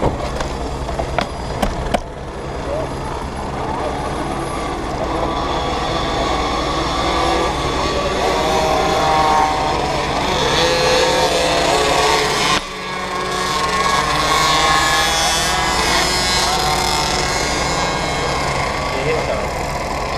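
Motorcycle engine idling steadily, with a brief dip about twelve seconds in.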